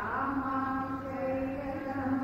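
Sanskrit verse being chanted on one long, steady held note.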